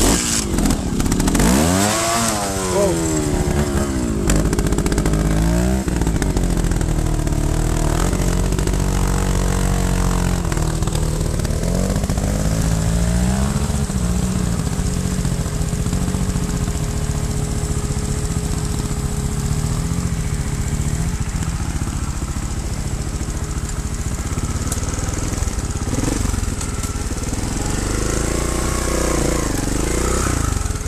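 Trials motorcycle engine revving up and down as the bike climbs a rocky trail, heard close from on the bike. The pitch rises and falls in repeated throttle bursts over the first few seconds, runs steadier through the middle, and climbs again a few times near the end.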